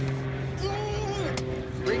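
A steady low machine hum, with one short voice sound about a third of the way in and a sharp click shortly after the middle.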